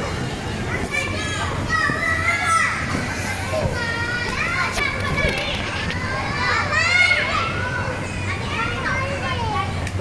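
Many children shouting, squealing and chattering as they play on an inflatable bouncy castle, their high voices overlapping throughout, with a steady low hum underneath.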